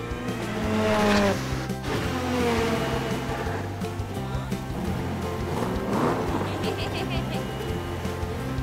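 Background music with cartoon race-car sound effects: cars whooshing past with a falling pitch about a second in and again near six seconds, with tyre squeal.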